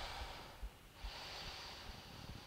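A woman breathing audibly, faintly, while holding a balance pose during a workout: one breath fades out about half a second in and the next begins at about one second and carries on.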